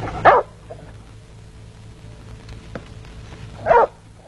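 A dog barking twice: one short bark just after the start and another near the end, about three and a half seconds apart.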